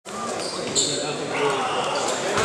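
A basketball being dribbled on a hardwood gym floor, with a brief high sneaker squeak just under a second in. Spectators talk throughout in the reverberant gym.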